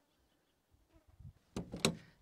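Near silence for about a second and a half, then a short noise with two sharp clicks near the end.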